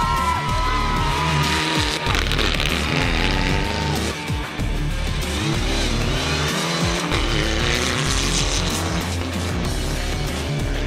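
Mitsubishi Lancer Evolution X rally car's engine revving up and down as it is driven hard on gravel, over electronic music with a steady bass beat.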